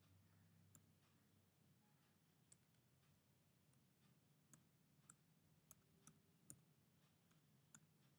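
Faint computer keyboard keys clicking as code is typed, about eight separate irregular keystrokes over a low hum of room tone.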